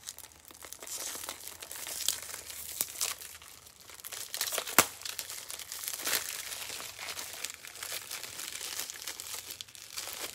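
Plastic trading-card packaging crinkling and crackling as it is handled and pulled at by hand, a continuous rustle broken by sharp snaps, the sharpest about five seconds in.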